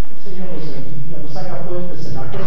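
A man speaking into a microphone, the words indistinct.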